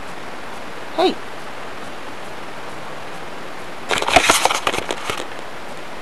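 Steady hiss from a low-quality webcam microphone. About four seconds in comes a second-long burst of crackling and clicking, handling noise as the camera is moved and turned around.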